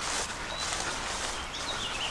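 Rural outdoor background: a steady, even hiss of open air with a couple of faint, short bird chirps.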